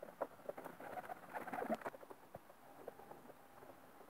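Racing pigeons in an aviary, faint: scattered small clicks and taps, with a short soft cooing about a second and a half in.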